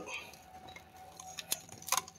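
A quiet pause broken by a few light, sharp clicks: two clear ones, about a second and a half in and again just before the end.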